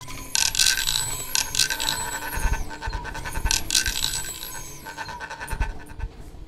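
Improvised sound effects: small objects scratched, scraped and rattled in an uneven flurry of clicks, with a few faint high whistling tones and some low knocks in the middle and near the end.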